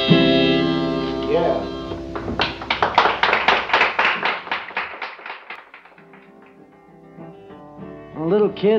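Acoustic guitar in a live 1961 folk recording: a held chord rings out, then quick even strums at about four a second that fade away. A quieter chord rings near the end.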